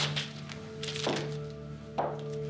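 Background score: a sustained drone with dull percussive thuds, three of them about a second apart.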